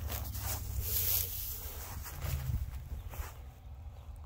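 Rustling and scraping in dry grass at a chain-link fence as signs are set down and a tiger moves close by, strongest in the first second or so, over a low steady rumble.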